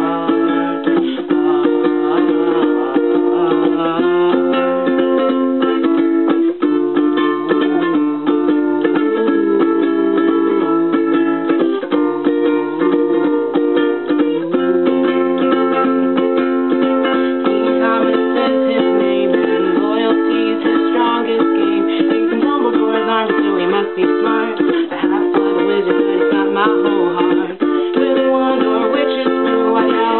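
Ukulele strummed steadily, its chords changing about every two seconds.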